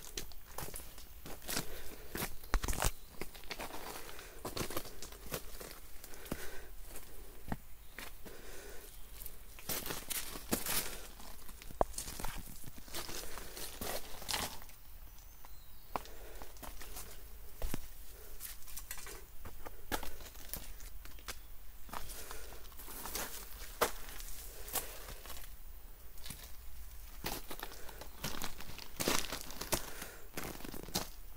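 A hiker's footsteps crunching over loose pebbles and dry leaf litter on a dried-up stream bed, an irregular run of crackly steps.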